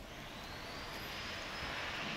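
A rushing hiss that grows slowly louder, with a faint high whine on top.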